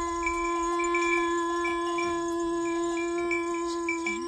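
A small mouth-held brass reed instrument sounds one long note, steady in pitch and rich in overtones. A brighter high tone flickers on and off above it.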